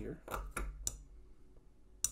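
Three light metallic clicks within the first second as the parts of a Quiet Carry Drift folding knife are fitted back together by hand.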